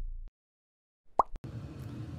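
The low notes of intro music fade out and cut to silence. A little past a second later comes a short pop with a quick chirp-like sweep, followed by two small clicks, then faint room noise.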